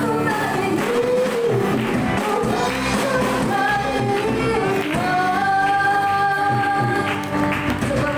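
Live worship song: a woman sings lead into a microphone over a band with electric guitars, holding one long note about five seconds in.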